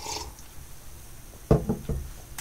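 A person drinking from a mug: a faint breath at the start, then a short burst of sipping and swallowing sounds about one and a half seconds in.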